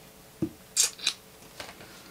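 Pen on notebook paper: a soft tap, then two short scratchy strokes.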